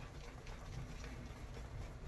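Badger-hair shaving brush (Turn N Shave V4 tip knot) working soap lather on the neck: faint, soft scrubbing strokes of bristles against skin and beard.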